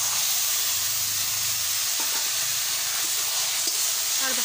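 Boiled, still-wet taro stems hitting hot oil in a metal wok, sizzling with a loud, steady hiss as a metal spatula stirs them. There are a few light scrapes of the spatula against the pan.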